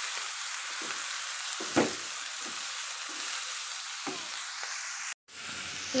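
Chopped amaranth leaves sizzling in a hot metal kadai while a wooden spatula stirs them, with a few short knocks of the spatula against the pan. The sound cuts off suddenly near the end.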